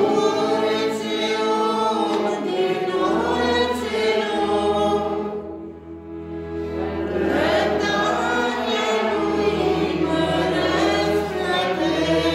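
Church congregation singing a hymn together in many voices, without speech, with a brief drop in loudness between lines about six seconds in.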